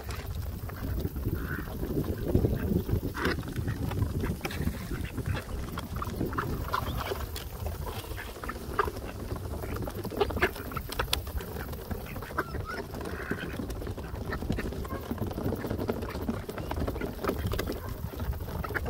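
A flock of mallards on a wooden dock, with occasional quacks and many small clicks of bills pecking at the boards, over a low rumble.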